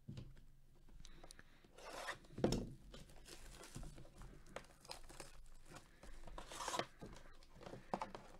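Plastic shrink wrap being torn and pulled off a cardboard trading-card hobby box, and the box top opened: tearing, crinkling and rubbing in scattered bursts, the loudest about two and a half seconds in.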